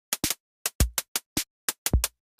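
Electronic drum pattern playing in Ableton Live: about ten short, sharp noise hits in an uneven rhythm, with kick drums that have a deep tail about a second in and near the end. Hits drop out irregularly because note chance (probability) has been turned down on some steps.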